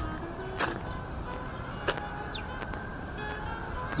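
A street performer playing an instrument: music of steady held notes over a constant outdoor background hum.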